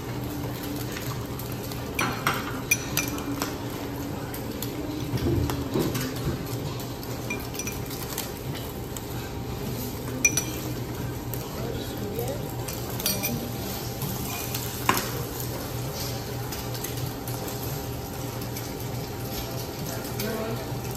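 A spatula scraping and tapping in stainless steel frying pans as omelettes cook and are folded, with a few sharp clinks, over a steady low hum.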